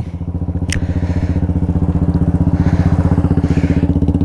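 Honda Unicorn 160's single-cylinder engine idling steadily through its silencer, with a quick even exhaust pulse. A single short click is heard just under a second in.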